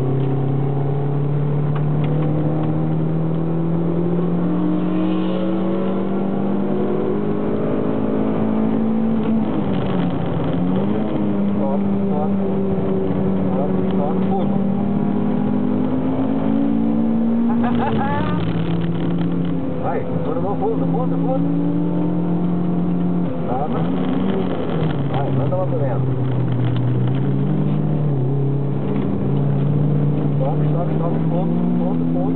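Toyota MR2 MK2's mid-mounted four-cylinder engine under load, heard from inside the cabin on track. The note climbs slowly in pitch, with sharp drops about ten, eighteen and twenty-four seconds in.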